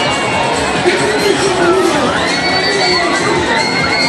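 Riders on a swinging Viking-ship ride screaming and shouting together, with long, high, held screams from about halfway through as the ship swings.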